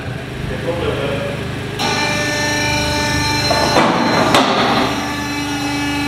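A newly installed two-post hydraulic car lift's electric pump motor switches on about two seconds in and runs with a steady hum as the lift is raised. A couple of sharp clacks come from the lift mechanism.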